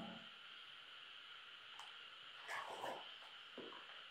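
A few faint dog yelps in the second half, over a steady hiss.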